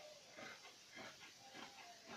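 Faint snips of scissors cutting through folded cotton cloth, a short soft stroke about every half second.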